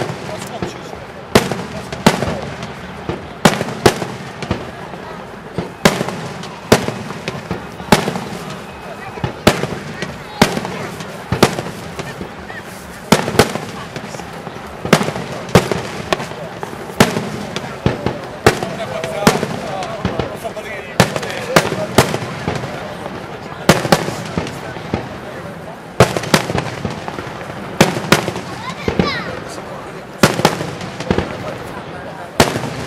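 Aerial firework shells bursting in quick succession, with a sharp bang every second or so, irregularly spaced, each trailing off in an echo.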